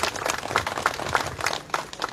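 Audience applauding, many hand claps overlapping.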